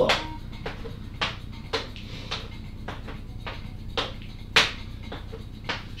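Footfalls of step-ups on an aerobics step and the tiled floor: a steady rhythm of thuds, about two a second.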